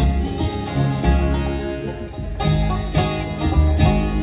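Live bluegrass band playing an instrumental passage: acoustic guitar, mandolin, fiddle and upright bass, with strong bass notes and sharp strummed accents twice in the second half.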